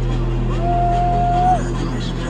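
Loud electronic dance music through an arena sound system: a sustained deep bass drone, with a single high note held steady for about a second.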